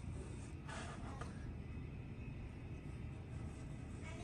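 A sharp blade cutting wallpaper along a metal taping-knife guide: a short faint scrape just under a second in and a fainter one shortly after, over a steady low room hum.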